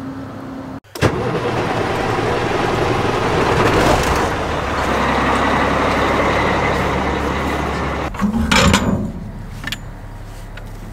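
A heavy engine running close by, with a steady low rumble under loud noise from the moving camera. About eight seconds in comes a short, louder burst with a rising tone, after which it quiets.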